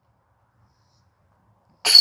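Near silence, then near the end a putter disc strikes the chains of a disc golf basket: a sudden metallic jangle with a high ringing tone as the putt goes in.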